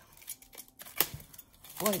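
A metal utility knife handled against a wrapped package: a few faint ticks, then one sharp click about a second in.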